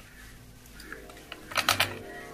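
Wire whisk beating eggs in a plastic bowl, its wires clicking against the bowl in quick taps, with a fast run of clicks near the end.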